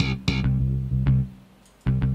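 Sampled slap bass patch, switched by MIDI velocity from soft to slap, playing a quick repeating bass line with sharp plucked attacks. It cuts out about two-thirds of the way through, then starts again just before the end.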